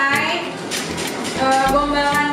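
A woman talking over background music with a steady beat.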